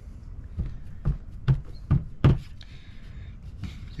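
Hands pressing and patting a folded damp paper towel down onto a plastic folding table: about five dull knocks in the first two and a half seconds, the last one the loudest.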